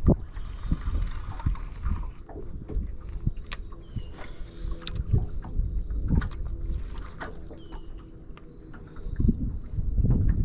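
Choppy water lapping against the hull of a fishing boat, with gusting low rumble on the microphone and a few sharp clicks from handling the spinning rod and reel.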